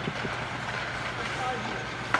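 Indoor ice rink during skating practice: a steady hum and hiss from the arena, with hockey skates scraping the ice and a few light stick-and-puck taps.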